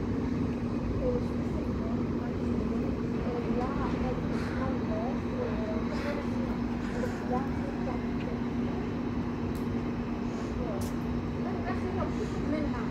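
Railway station platform ambience: a steady low hum with faint distant voices and scattered small sounds, and no train passing.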